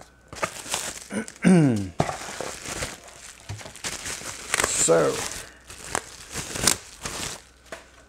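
Plastic packaging crinkling and rustling in short irregular strokes as reels of electronic components are unpacked from a parts box.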